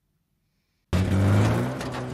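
Film soundtrack of the flying Ford Anglia's car engine running steadily. It cuts in suddenly and loud about a second in, after near silence.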